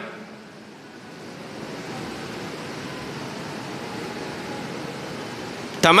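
Steady, even hiss of background room noise, growing slightly louder over the first two seconds.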